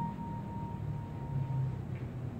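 Grand piano in a soft passage: a single high note, struck just before, rings on and fades away near the end, over a faint low rumble.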